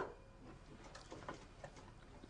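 Faint, irregular light clicks and ticks, a few to the second, after one sharper click at the start.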